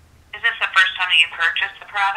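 A voice speaking through a phone's speaker on a call, thin and narrow-sounding, starting a moment in after a brief pause.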